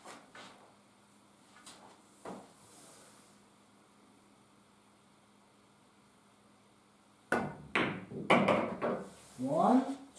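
A pool shot: the cue tip strikes the cue ball, followed at once by the click of cue ball on object ball and a quick run of knocks as the cue ball comes off two cushions and the object ball drops into the pocket, all within about two seconds.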